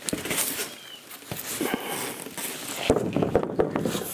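A large sheet of rigid foam board being handled and laid onto a folding metal work stand: the foam scrapes and rubs, with a few light knocks.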